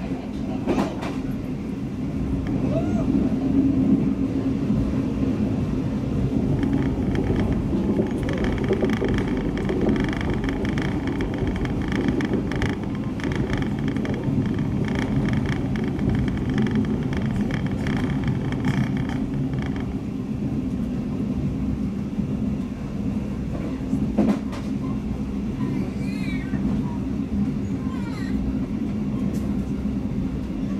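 A State Railway of Thailand sleeper train running, heard from inside the carriage: a steady low rumble of the moving train, with a stretch of rapid clatter in the middle.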